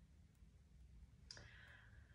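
Near silence: faint low room hum, with one small click a little over a second in.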